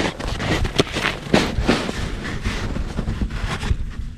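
Irregular rustling and scraping, a few sharp noises a second, from hands and clothing as fishing line is pulled in hand over hand at an ice hole, over a low rumble of wind on the microphone.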